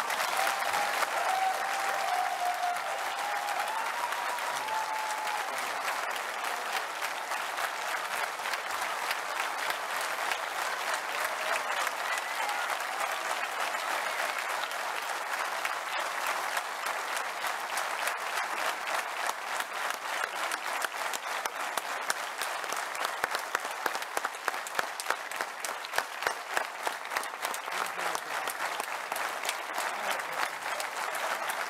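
A large indoor audience applauding steadily, with the individual claps becoming sharper and more separate in the second half.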